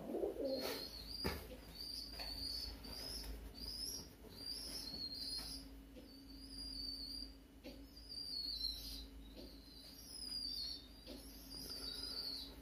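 Birds chirping: a string of short, high, faint chirps about once a second, over a faint steady hum.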